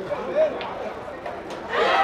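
Cue and balls clicking sharply twice on a sinuca table during a cut shot, over crowd chatter. The voices rise near the end.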